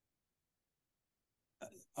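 Near silence: a pause in speech, broken near the end by a short sound from the man's voice as he starts to speak again.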